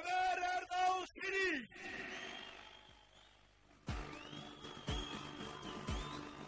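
A man's amplified voice calls out in two long, held syllables and then fades away. About four seconds in, loud rally music with a heavy beat about once a second starts.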